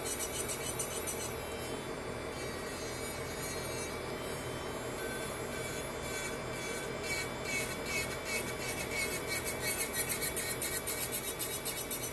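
Electric nail drill running steadily while its bit files a long acrylic nail, a rasping scrape over a steady motor whine. From about halfway through, the rasping comes in quick, even strokes as the bit is passed back and forth over the nail.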